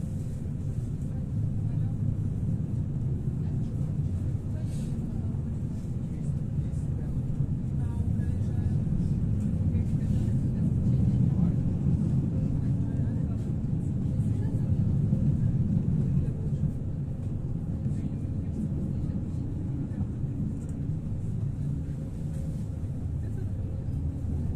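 Pesa Foxtrot tram running at speed, heard from inside the passenger cabin: a steady low rumble of wheels on rails and running gear, growing somewhat louder around the middle.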